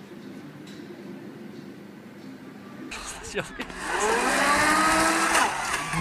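Low steady background hum, then from about four seconds in a vehicle engine revving hard as it drives through snow, its pitch repeatedly rising and falling.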